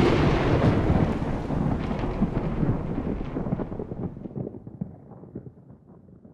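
A thunderclap rolling on as a long rumble that slowly dies away over about five seconds.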